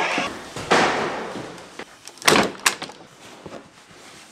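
A door being opened by its handle and then shut: a rushing swing about a second in, then two sharp bangs close together a little past halfway as it closes and latches.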